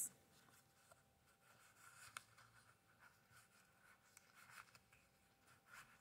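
Faint rustling and light scraping of paper and card as a handmade mini booklet and a paper tag are handled, with a small click about two seconds in.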